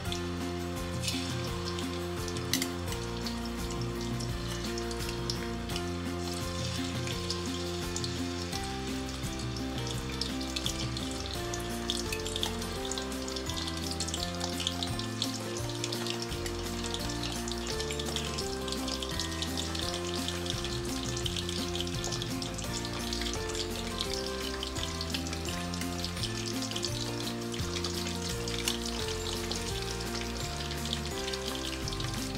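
Fish pieces frying in hot oil in a pan, a steady crackling sizzle that grows denser in the second half as more pieces go in. Soft background music plays underneath.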